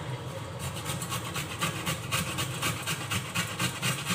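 A raw carrot being grated by hand, rasping in quick, even strokes about four or five times a second, starting about half a second in.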